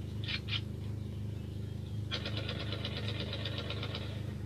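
A steady low engine hum, with two short bursts near the start and a fast, even ticking that starts about halfway through.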